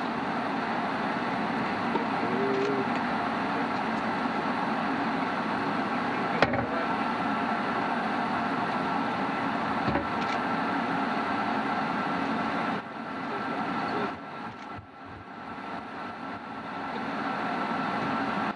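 Steady hum and hiss of the space station cabin's ventilation fans and equipment, with a thin steady whine, in a closed module. Two sharp clicks come about six and ten seconds in, and the noise drops and turns uneven after about thirteen seconds.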